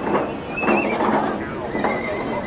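Dubbed-in street ambience: a horse whinnying about half a second in, with a shorter call near the end, over people's voices chattering.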